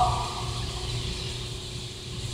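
Room tone: a steady low hum with a faint steady tone above it, just after a man's voice trails off at the very start.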